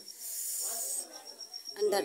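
Egg-and-tomato scramble sizzling in a hot frying pan: a hiss that lasts about a second near the start, then dies down.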